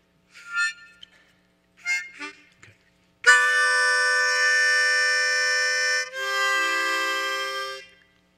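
Harmonica playing a tension-resolution passage: two short note bursts, then a long held chord about three seconds in that changes to a second, resolving chord and ends just before the close.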